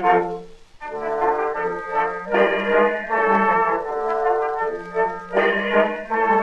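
Acoustic-era 1912 gramophone recording of a small orchestra, brass to the fore, playing an instrumental break between the chorus and the next verse of a ragtime song. The sound drops out briefly about half a second in, then the band plays on with a run of changing notes.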